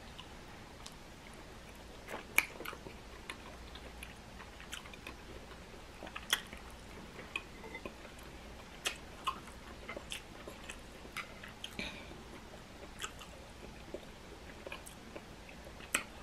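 A person chewing a mouthful of soft-steamed asparagus and rice close to the microphone, with irregular wet mouth clicks and smacks; the loudest come about two and six seconds in.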